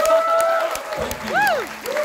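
Audience applauding at the close of a live song, with long held whoops from the crowd over the clapping, one of which swoops up and down near the middle.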